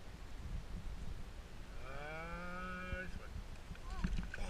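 A cow mooing once in the distance: a single drawn-out moo lasting just over a second, starting about two seconds in, faint over a low background rumble.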